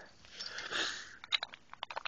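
Small Beyblade parts of metal and plastic being handled and fitted together by hand: a soft rustling hiss, then a quick run of small sharp clicks in the second half.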